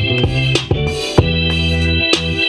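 Hip-hop beat with an organ sound holding chords, played from a MIDI keyboard, over drum hits and a bass line. About a second in a loud hit lands and the bass settles into a long low note.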